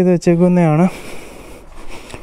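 A man's voice speaking briefly, then about a second of low, even background noise.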